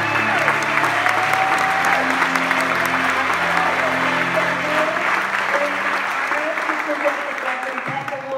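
An audience applauding in a large hall, over the soft ending of background music that fades out a little past the middle.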